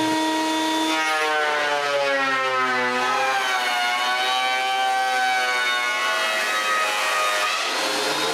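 Benchtop thickness planer running as a board feeds through it, its motor pitch sagging under the cut and then recovering.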